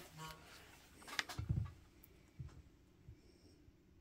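Quiet handling sounds at a craft table: a few soft knocks and taps as a small handheld tool and paper bow pieces are picked up and pressed down, the loudest about a second and a half in.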